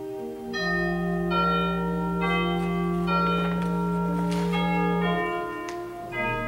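Slow instrumental church music: sustained chords with bell-like tones, changing about once a second over a long held bass note that ends near the end.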